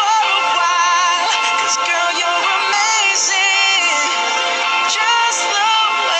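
A recorded pop song playing: a lead singing voice with a wavering melody over steady backing music.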